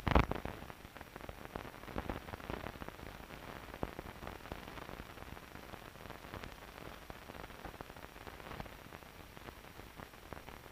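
Surface noise of an old 16 mm film soundtrack: a loud pop at the start, then a steady hiss with scattered crackles and clicks.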